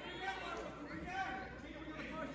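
Faint, indistinct chatter of spectators' voices in a gymnasium.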